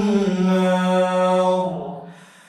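A man's voice chanting Qur'anic recitation at a prayer microphone, holding one long, steady vowel that fades out near the end.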